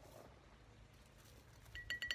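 Near silence, then near the end a few light clinks with a brief ringing tone: a painting tool knocking against its paint container.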